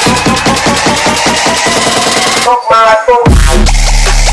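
Budots-style electronic dance remix with a fast, steady beat. About two and a half seconds in the beat drops out for a short rising pitched figure. A deep, sustained bass then comes in.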